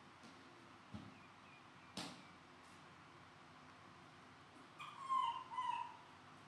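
Two soft clicks in the first two seconds, then a baby monkey gives a high-pitched call in two short parts near the end.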